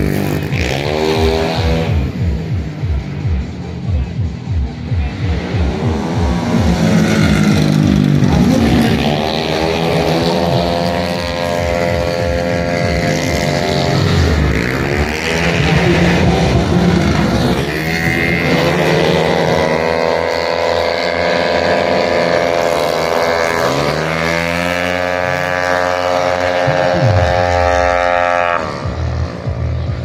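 130cc automatic racing scooters running past in a pack, their engine whine rising and falling again and again as bikes come and go. Near the middle and near the end the pitch drops steeply as a bike passes close.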